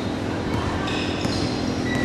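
Basketball bouncing on a hardwood court, echoing in a large gym, over the general noise of a game in progress.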